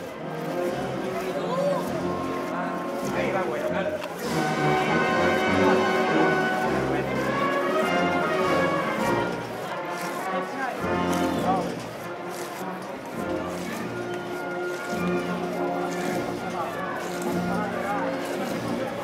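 A marching band playing a slow Holy Week procession march (marcha procesional), with sustained held chords and changing notes.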